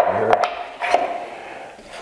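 Small wooden pieces handled on a wooden workbench top: a sharp knock as a block is set down, a second light knock, then a brief scrape of wood sliding across the bench.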